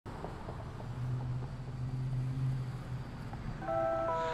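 A low steady engine-like hum over faint outdoor noise. Music with sustained tones comes in near the end.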